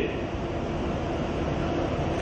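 Steady rumbling background noise of a hall picked up through a podium microphone, with no clear single source.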